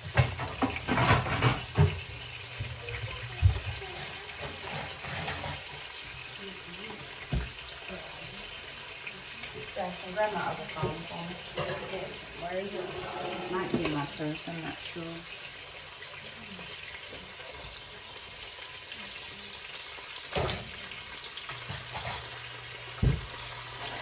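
Pork chops sizzling steadily in a skillet over a lit burner, with a few sharp knocks of pans or utensils in the first few seconds and again near the end.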